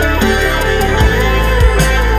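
Guitar improvising with bending, gliding notes over an electronic backing track with a deep, sustained bass and a few low drum thumps.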